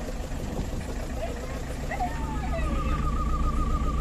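A Tata vehicle's engine running steadily at low speed, heard from inside the cab. A short falling tone sounds about two seconds in, followed by a thin, wavering high tone near the end.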